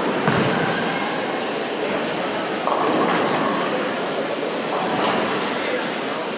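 A bowling ball lands on the lane with a low thud just after the start, then rolls with a steady rumble. Pins clatter a little under three seconds in. All of this is heard amid the continuous din of a busy bowling alley, with balls rolling and pins falling on many lanes and voices around.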